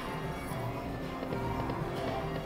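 A Lock It Link 'Cats Hats and More Bats' video slot machine's reels spinning, with its quiet electronic spin tones over a low background hum.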